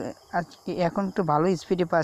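A man speaking Bengali, with a faint steady high-pitched tone underneath.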